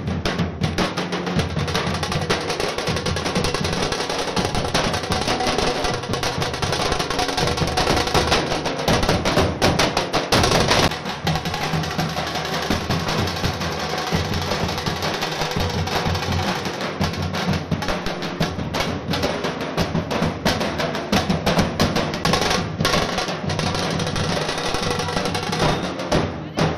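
Festive drum-led music with fast, dense drumming that runs without a break, with a brief louder swell about ten seconds in.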